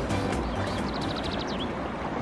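Background music fading out within the first half second, leaving lake water lapping and washing against a rocky shore as hands scoop it up. A brief rapid trill of high chirps comes near the middle.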